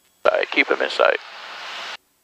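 A short burst of speech, a word or two, over the cockpit headset audio feed, followed by nearly a second of hiss that rises slightly and then cuts off abruptly as the transmission closes.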